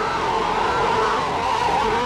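Cartoon giant tube worms crying out together: several overlapping wavering, warbling voices, held at a steady level.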